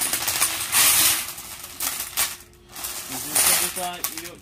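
Glass fire beads pouring out of a plastic bag into the metal burner bowl of a gas fire table: a dense clatter of glass on glass in pours of a second or so, with a short lull about two and a half seconds in.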